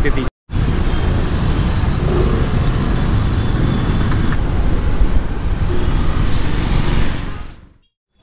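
Ride noise from a Honda Activa scooter moving through city traffic, mostly wind buffeting the microphone along with road and traffic noise. It fades out near the end.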